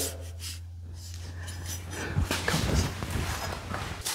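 A hand brush sweeping sawdust on a concrete floor, in scattered scratchy strokes starting about halfway, after a quieter stretch with a low steady hum.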